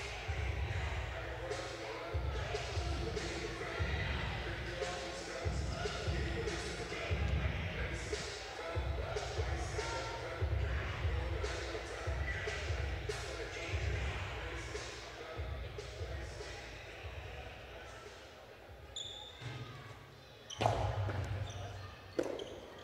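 Background chatter echoing in a large indoor jai-alai fronton between points, with a low thud about once a second.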